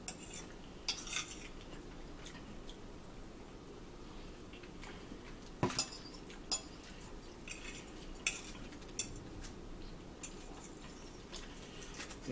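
Metal fork clicking and scraping against a plate of macaroni salad as someone eats, in scattered light clicks every second or so.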